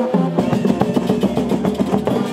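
School marching band playing live: brass horns carry the tune over a steady beat of marching snare and tenor drums.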